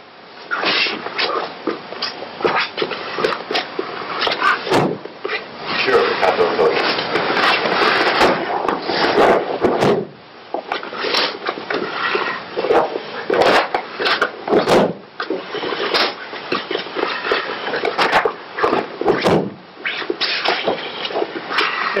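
A man talking, with many short knocks and thumps scattered through it.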